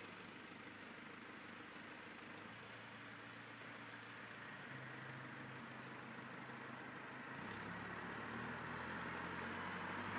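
A car approaching along the road, its engine and tyre noise faint at first and growing steadily louder.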